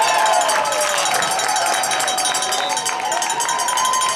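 Spectators yelling at a lacrosse game, several voices holding long drawn-out shouts over crowd noise, with short clicks.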